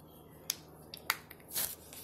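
Small hard-plastic toy purse and blaster accessory being handled and shut, giving several separate sharp clicks and a brief rustle.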